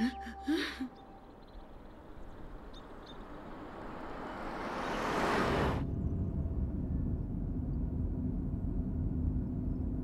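A rush of noise swells over several seconds and cuts off suddenly about six seconds in, giving way to the steady low rumble of road and engine noise heard inside a moving car.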